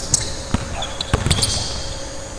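Basketball bouncing a few times on a hardwood gym floor during a drill, sharp separate thuds with the echo of a large hall.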